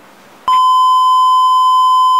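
A loud, steady electronic beep tone at a single pitch, like a TV test-signal or off-air tone used as an editing effect. It starts suddenly about half a second in, after a quiet moment, and holds unbroken.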